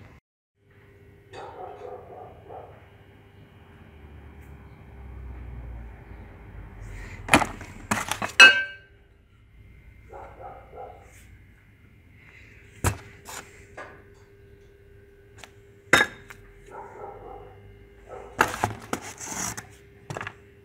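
Steel camshafts being handled and set down on a workbench: scattered metallic clinks and knocks. The loudest is a quick cluster of ringing clinks about eight seconds in, with single knocks around thirteen and sixteen seconds and another cluster near the end.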